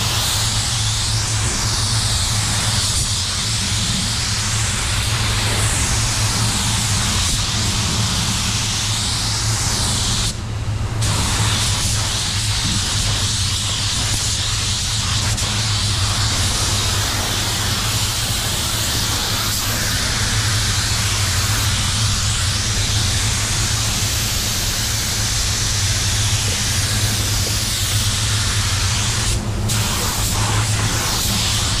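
Automotive paint spray gun hissing steadily as it sprays paint, the hiss cutting out briefly twice as the trigger is released, about a third of the way in and near the end. Under it runs a steady low hum from the paint booth's air handling.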